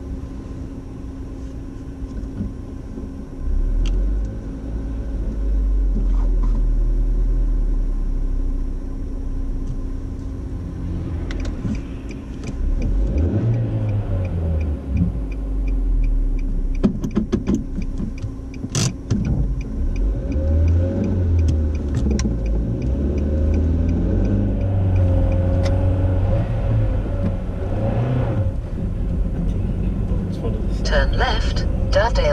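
Car engine and road noise heard from inside the cabin as the car pulls away from the kerb on a hill and drives along a residential street. The engine picks up a few seconds in, and its note then rises and falls.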